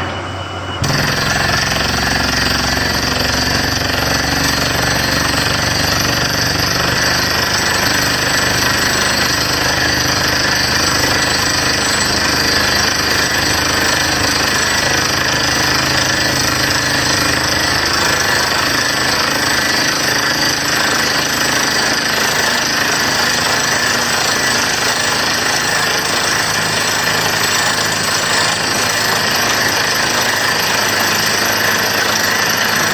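Borewell drilling rig boring into the ground: its percussive air hammer and air blast running as a loud, dense, steady din that starts abruptly about a second in, over the steady drone of the rig's engine.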